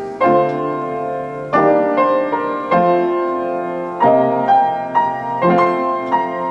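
Kimball upright piano played slowly: a full chord struck about every second and a half, each one ringing on and fading before the next.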